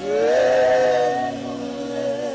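Praise-and-worship singing: a voice slides up into a loud held note that lasts about a second, with other sung notes underneath.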